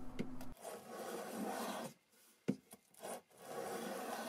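Small hand block plane taking shavings off a thin wooden strip being made into cleat stock: three planing strokes, the first long, the second short, with a single sharp knock in the pause about halfway through.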